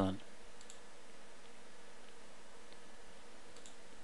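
Steady background hiss with a few faint computer mouse clicks near the end.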